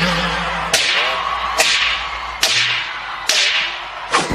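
Four sharp whip-crack hits from the dance's backing track, evenly spaced a little under a second apart, each with a ringing tail.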